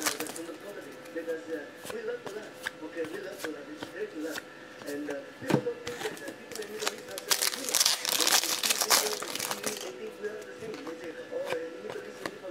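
Hands opening a Totally Certified basketball card pack and going through the cards: the wrapper crinkling and the card stock giving quick flicks, slides and scrapes, busiest about seven to nine seconds in. Faint music plays underneath.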